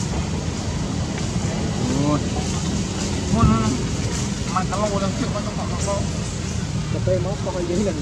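Indistinct voices talking in short phrases from about two seconds in, over a steady outdoor noise bed with a low hum.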